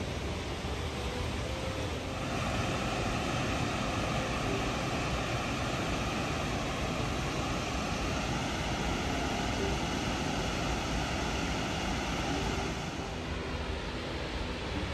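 Rainbow Falls, the waterfall on the Middle Fork of the San Joaquin River, rushing steadily. The roar grows louder about two seconds in and eases off near the end.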